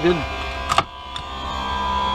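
A sharp click about three quarters of a second in as the lens block is pulled off the edged lens, then a fainter tick, over the steady hum of a lens edger cutting the other lens, which grows louder near the end.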